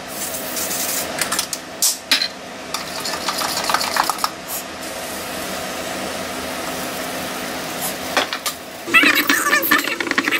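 A utensil stirring pancake batter in a mixing bowl, clicking and scraping against the bowl for the first few seconds, then a steadier stirring sound. Near the end, a louder crinkling clatter.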